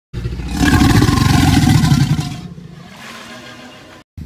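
A loud, rough, rumbling roar sound effect that fades away after about two and a half seconds.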